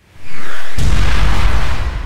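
Loud logo-reveal sound effect: a noisy whoosh that swells up quickly, then a deep boom just under a second in that rumbles on and slowly dies away.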